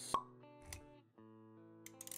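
Background music with plucked-guitar-like notes. A sharp pop just after the start is the loudest sound, a low thud follows about half a second later, and a run of short clicks comes near the end.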